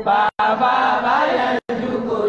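A man chanting in a sustained, melodic voice, with long held notes that glide in pitch. The sound cuts out completely for an instant twice, about a third of a second in and again near the end.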